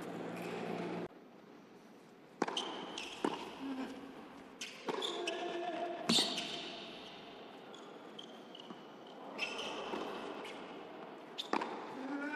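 Tennis ball bounced on an indoor hard court before a serve, a few sharp knocks spaced about a second or more apart, echoing in a large arena.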